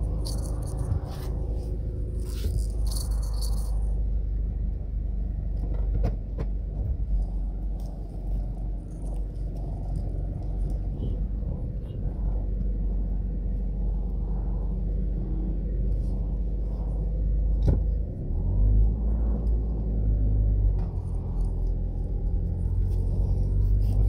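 Low, steady road and engine rumble heard inside a moving car's cabin, shifting briefly about 18 seconds in.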